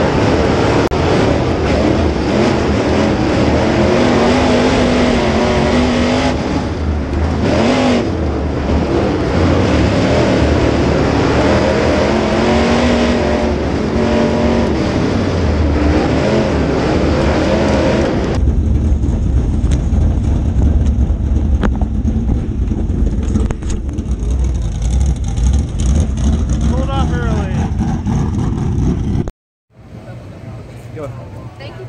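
Super Late Model dirt car's V8 engine heard from inside the car, running hard with its pitch rising and falling as the throttle opens and closes. About 18 seconds in, the engine note drops to a lower rumble as the car comes off the throttle, and the sound cuts off suddenly just before the end.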